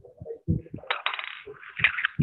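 A run of clicks, knocks and clinks, with a denser rattle about a second in, heard through a video-call connection.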